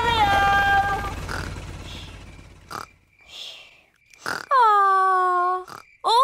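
Cartoon helicopter's low rumble fading away over the first three seconds, under a held, pitched call at the start. After a near-quiet gap with a couple of soft clicks, a short whoosh comes about four seconds in, then a long, falling vocal sound from a pig character.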